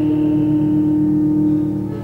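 Church organ holding a steady chord as the sung phrase dies away, with a slight pulsing in its lower notes; the chord drops away at the end.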